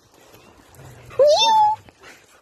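A dog gives one short whine about halfway through, rising in pitch and then holding steady, over faint shuffling.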